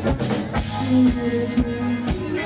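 Live band playing upbeat dance-pop: a steady drum-kit beat with long held bass and keyboard notes under it.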